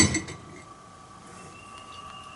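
A sharp metal clank as the centrifuge's metal lid is worked loose and lifted off its bowl, followed by a few lighter clinks.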